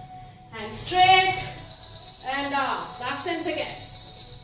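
A voice, and from a little before halfway a steady, high-pitched electronic tone that sets in suddenly and holds, over the voice.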